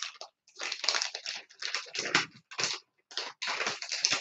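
Irregular scratchy rustling and scraping as paper and a paint tool are worked by hand over a paper journal page: a run of short, noisy strokes with brief gaps between them.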